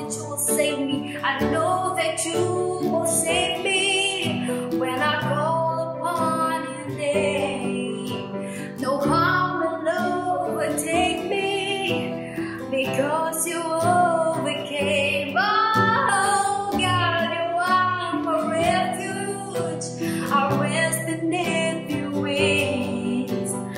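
Worship song: a woman singing lead over strummed acoustic guitar and keyboard.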